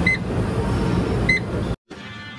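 Exercise machine console beeping twice, two short electronic beeps about a second apart, as its buttons are pressed. A loud, steady rush of gym machine noise lies under them and cuts off suddenly near the end.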